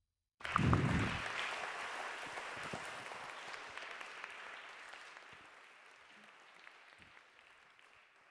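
Audience applauding in a large hall, starting suddenly after a brief silence and slowly dying away.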